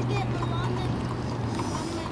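Outdoor soccer-field ambience: faint, distant shouts from players and spectators over a steady low hum that fades out near the end.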